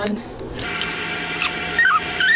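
A steady whirring hiss with a faint hum in it starts about half a second in, like a small motor running, and near the end a high, wavering whine begins, rising and falling in pitch.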